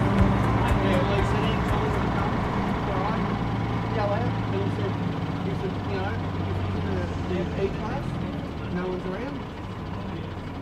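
MAN city bus's diesel engine running with a steady low drone in slow street traffic, with people's voices in the background.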